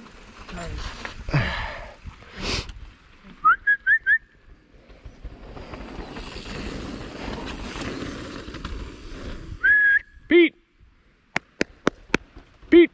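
Mountain bike rolling over a dirt trail while its disc brakes squeal: four quick high chirps at nearly one pitch about three and a half seconds in, and a longer squeal near ten seconds as the rider pulls over. A few sharp clicks come near the end.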